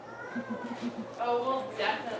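An actor's drawn-out, high-pitched vocal sound, gliding up and then down in pitch with a quick flutter beneath it, followed by speech about halfway through.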